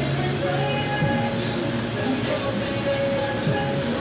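Supermarket checkout background: a steady store hubbub with long held notes of background music that shift pitch every second or two.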